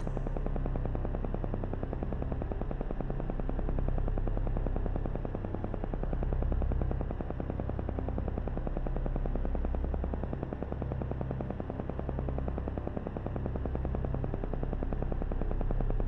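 Background meditation tone: a steady low hum with a rapid, even pulse running through it. No birdsong is heard.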